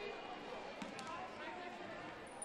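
A basketball bounced twice on a hardwood court by a player at the free-throw line, about a second in, over faint arena hubbub.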